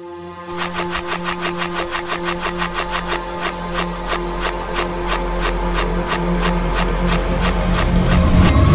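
A pop instrumental played in reverse: a rapid, even pulse of about four beats a second starts about half a second in over held tones, and it swells steadily louder.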